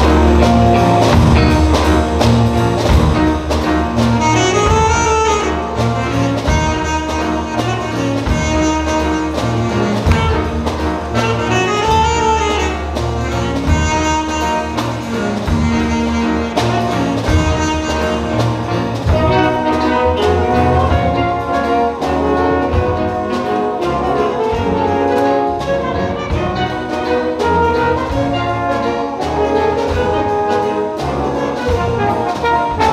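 School jazz band playing live: saxophones and brass over bass and drum kit, with a bending solo line standing out twice in the first half.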